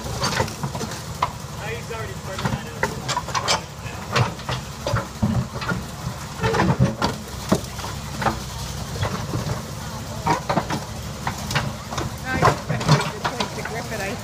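Backhoe's diesel engine running steadily while its bucket crushes a scrapped car body, with irregular crunches, clanks and bangs of bending metal throughout.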